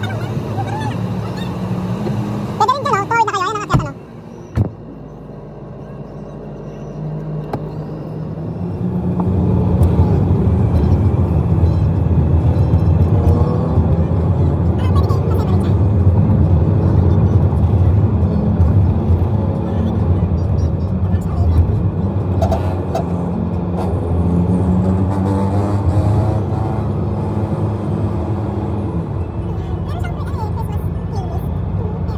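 Car cabin noise while driving: engine and road rumble, with music playing inside the car. A brief loud, wavering sound comes about three seconds in, and the rumble grows louder from about eight seconds in as the car picks up speed on an open road.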